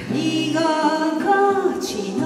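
A woman singing a sustained, slowly moving melodic line of a Japanese song, with a hissing consonant near the end.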